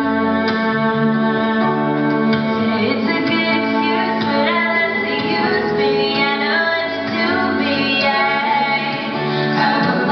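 A woman singing a song live while playing an acoustic guitar, holding long notes over the strummed chords.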